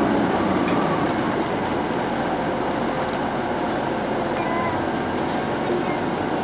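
TTC CLRV streetcar running along its track, heard from inside the car: a steady rumble of wheels and motor, with a thin high squeal from about a second and a half in, lasting some two seconds.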